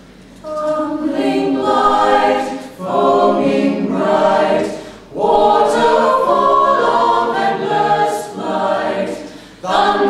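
Mixed a cappella choir of sopranos, altos, tenors and bass singing unaccompanied in harmony. Voices come in about half a second in, after a brief lull, and the singing runs in several phrases with short breaks between them.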